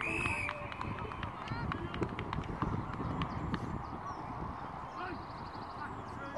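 A referee's whistle gives one short, steady blast right at the start. Indistinct shouts and calls from players and spectators follow.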